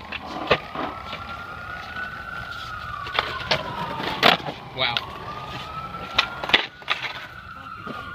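A distant emergency-vehicle siren wailing slowly up and down, with several sharp clacks of skateboards on the concrete steps.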